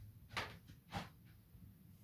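Quiet room tone with two faint short clicks, about half a second apart.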